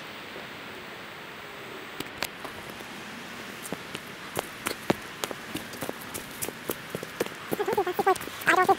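Steady rain hiss, with sharp drips of raindrops landing close to the microphone, irregular and growing more frequent from about two seconds in. A voice starts right at the end.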